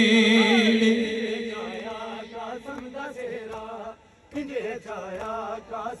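Noha recitation: a male voice holds a long wavering note that fades out about a second in. Quieter chanted phrases of the lament follow, broken by a short pause near four seconds.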